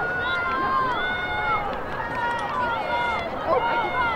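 Several high girls' voices calling and shouting across an outdoor field at once, long held and falling calls overlapping, with no words made out.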